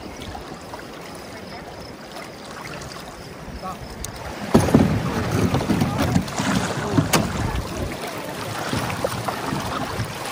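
Rushing river water around a pair of lashed skin-on-frame canoes. About four and a half seconds in comes a sudden hard impact as the loaded boats crash into the rocky bank, then several seconds of the hulls grinding and scraping over rock. The lightweight fabric skins are scraped along the bottom and the rub strip is worn, but they are not punctured.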